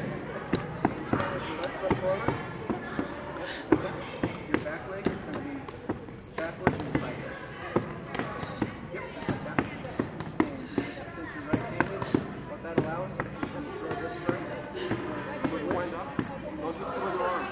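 Punches landing on a hand-held padded strike shield: an uneven series of sharp slaps, about two a second.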